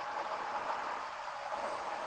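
A steady, even hiss of background noise with no other events.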